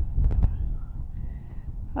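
Strong wind buffeting a smartphone's microphone: a low, gusty rumble, loudest in the first half second, with a couple of sharp handling clicks as the phone is held against the wind.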